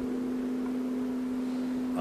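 A steady low hum, one unchanging tone with a fainter overtone, over a faint hiss, typical of a public-address sound system.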